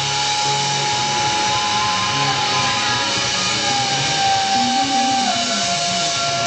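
Live rock band playing loud: a distorted electric guitar holds one long high note that steps down in pitch twice, over a bass line.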